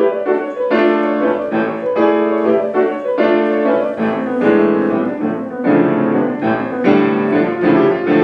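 Piano playing a passage of struck chords in contemporary classical style, about two a second, each ringing and fading before the next.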